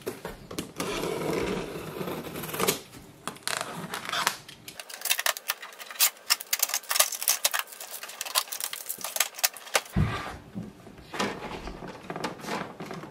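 Unboxing handling noise: a box cutter slitting the tape on a cardboard printer box, then blue packing tape being peeled off a plastic printer, giving a dense run of sharp clicks and crackles.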